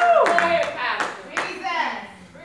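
Congregation voices calling out, with a drawn-out exclamation that falls in pitch near the start, over scattered hand claps.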